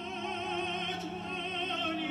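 Operatic tenor singing sustained notes with a wide vibrato, accompanied by grand piano.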